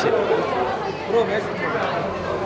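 Crowd chatter: several people talking at once in a busy room, with no single voice standing out.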